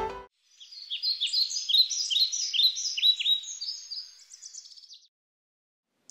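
Bird chirping: a quick run of short, falling chirps, about three a second, that fades out about five seconds in.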